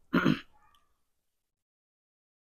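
A man briefly clearing his throat right at the start, a single short voiced sound lasting about a third of a second.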